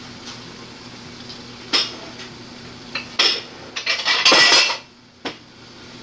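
Kitchen containers and utensils handled on a counter: a few separate sharp clinks and knocks, then a louder half-second clatter a little past four seconds in.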